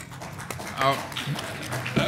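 Faint, brief speech away from the microphone as one speaker replaces another at a lectern, with a short murmured phrase about a second in.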